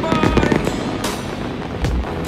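A fireworks display, with several sharp bangs and crackling bursts, over music playing.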